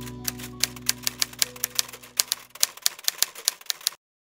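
The song's last held notes fading out under a quick, irregular run of sharp clicks, about five a second, like typing, which stops suddenly at the end.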